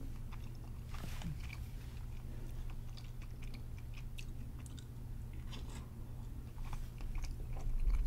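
Close-up mouth sounds of a person eating spoonfuls of mapo tofu with ground beef: chewing with many small wet clicks and smacks.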